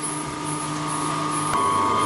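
Belt-driven micro hydro generator set running: a Francis turbine driving a 20 kW alternator through a flat belt, with a steady hum and a high whine over machine noise. About one and a half seconds in there is a click, and the whine gets louder.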